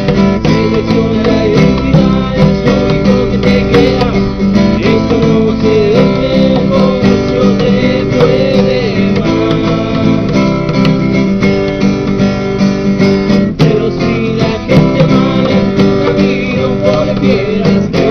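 Acoustic guitar being strummed, with a man singing along.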